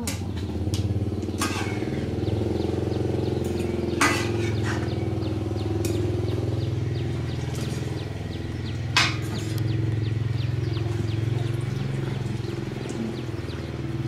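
A small engine idling steadily throughout. Over it come a few sharp metal clinks of a wire strainer knocking against a metal cooking pot, the loudest about four and nine seconds in.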